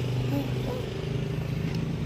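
A motor running steadily with an even low hum.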